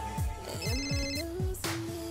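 A mobile phone ringing: a short, rapidly pulsing high electronic ringtone a little past halfway, over background music with a bass-heavy beat.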